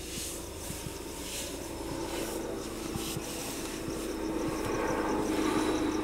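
A low steady drone, slowly growing louder, under bursts of cloth rustling as knitted balaclavas and hats are pulled on. A faint high chirping comes in near the end.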